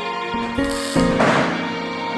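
Background music with sustained chords that change notes, and a short noisy swell about a second in.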